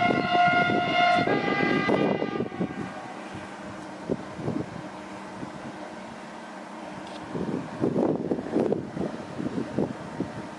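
A Renfe electric train's horn sounds one blast in two notes: a higher note for about a second, then a lower note for about a second and a half. After it, wind gusts on the microphone.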